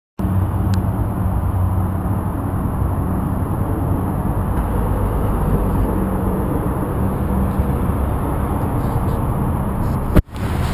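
Steady low rumble of a car engine idling, with a constant low hum.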